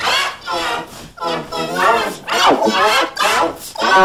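A child's wailing and yelling, run through stacked pitch-shifting effects so the voice sounds layered and musical. It comes as a string of separate cries, each bending up and down in pitch.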